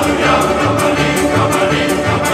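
Recorded music: a choir singing over instrumental backing, with a steady percussive beat.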